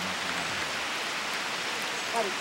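Steady hiss of rain falling on the forest floor and pooled water, with a faint low murmur of voices in the first second.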